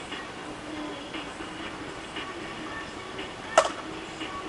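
A single sharp crack near the end: a plastic wiffleball bat hitting a wiffle ball, with a short hollow ring. Under it, a steady faint background hum.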